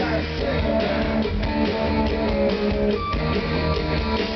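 Rock band playing live: electric guitar over a drum kit, with a steady beat.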